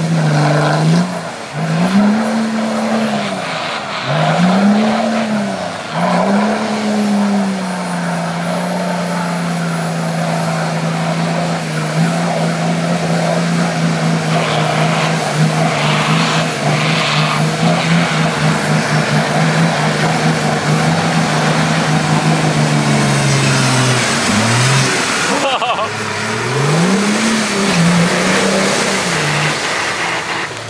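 Nissan Patrol 4x4's engine revving hard in a deep mud pit: a few quick rises and falls in revs, then held high and steady for about fifteen seconds while the tyres churn through the mud, dropping off and revving up again near the end.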